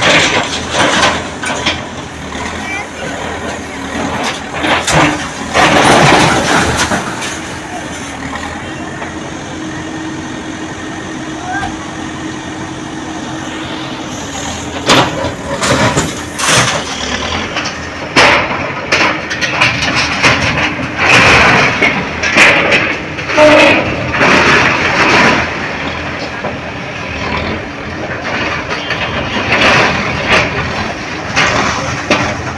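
Manitou TLB 844S backhoe loader running while its bucket smashes through a masonry wall. The engine drones steadily, broken by repeated loud crashes of concrete and debris falling, most of them in the second half.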